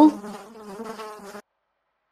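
A person's vocal imitation of a fly buzzing: a faint, steady, low buzz that trails off and stops about a second and a half in.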